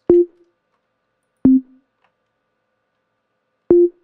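Short, sine-like synth bass notes played back from the Nexus plugin in FL Studio's piano roll: three brief notes, each with a click at its onset, the middle one a step lower than the first and last, with silence between them.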